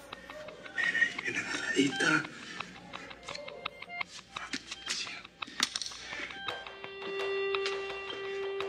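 Suspenseful background music, with a brief low voice about a second in and scattered soft clicks; a sustained chord sets in near the end.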